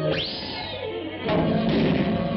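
Cartoon sound effects over an orchestral score: a quick rising whistle-like swoop that slowly falls away, then a sudden crash about a second and a quarter in.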